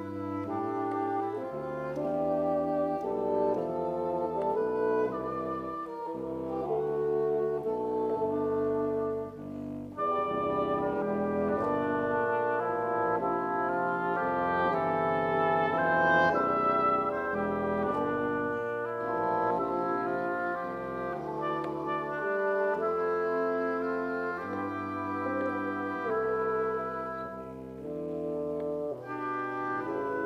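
Double-reed quartet of oboe, cor anglais, bassoon and contrabassoon playing a modern classical piece, several sustained lines sounding together from the contrabassoon's low notes up to the oboe's, with a brief drop in level about a third of the way in.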